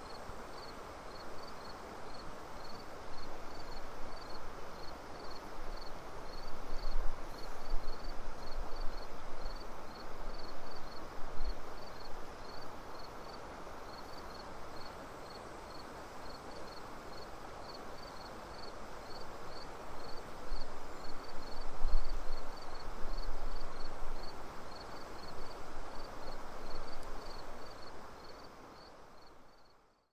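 Outdoor ambience: a steady rushing noise with a faint high chirp repeating evenly about three times a second, and occasional low thumps. It fades out at the very end.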